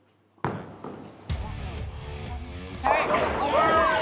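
A bowling ball lands on the lane with a thud and rolls, then clatters into the pins for a strike. About three seconds in, the team breaks into loud excited cheering and screaming.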